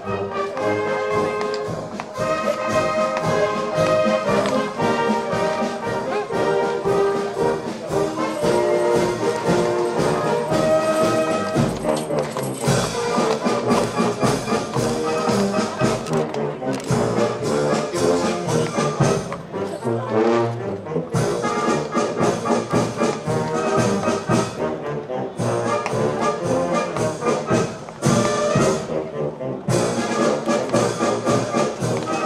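A brass-led orchestra, with trumpets and trombones prominent, plays a piece with held notes and brief breaks between phrases.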